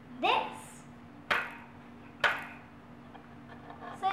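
A rubber band stretched over a wooden harp sound box is plucked three times, about a second apart. Each pluck is a sharp twang that fades over about half a second, and the first one slides upward in pitch.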